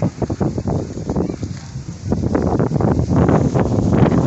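Wind buffeting the microphone, with clear plastic bags crinkling and rustling in short bursts as roti maryam is wrapped.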